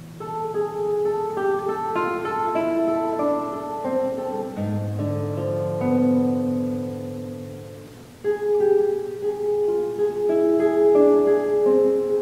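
Solo nylon-string classical guitar played fingerstyle: a melodic line of ringing notes over held bass notes, fading away about eight seconds in before a louder new phrase begins. Picked up by a camera's built-in microphone.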